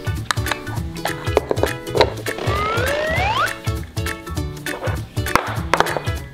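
Upbeat children's background music with a steady bouncing bass rhythm. A whistle-like sound effect rises in pitch about halfway through.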